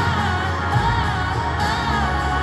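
Live pop ballad: a woman's lead vocal singing a slow, wavering melody over a band, heard through the stadium's PA from the stands.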